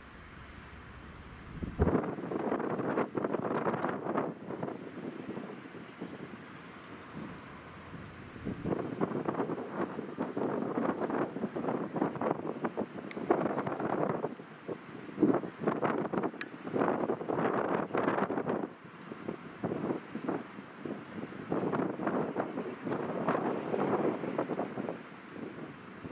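Wind buffeting the microphone in irregular gusts, with a calmer spell from about five to nine seconds in. Beneath it, an SM42 diesel shunting locomotive runs as it approaches slowly.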